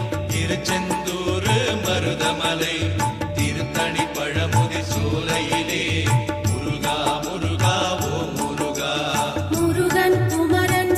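Murugan devotional music from a Cavadee song, with a steady low drum beat under a melody.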